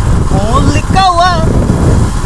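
Motorcycle being ridden, its engine running under a heavy wind rumble on the microphone, with a man's voice calling out loudly over it about half a second in.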